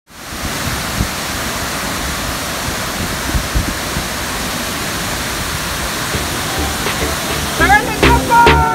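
Waterfall's steady rush of falling water, close up. Music comes in just before the end.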